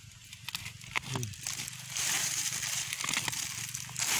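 Small steel spade cutting and scraping into soft soil, with crunching of dirt and roots and a denser scraping hiss over the last two seconds. A short voiced exclamation comes about a second in.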